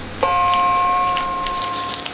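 Electric guitar strings struck once and ringing out through an amplifier: a few steady notes that start suddenly and sustain for almost two seconds, fading slightly.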